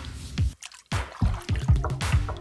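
Music fades out, and after a brief near-silence a quick run of water-drop sound effects begins, a string of short drips and plops.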